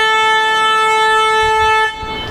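A horn sounding one long, steady note, loud over everything else, cutting off sharply near the end.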